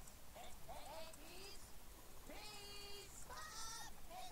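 Faint, high-pitched, sped-up cartoon voices of little animated peas calling out short lines, with one long held call about halfway through.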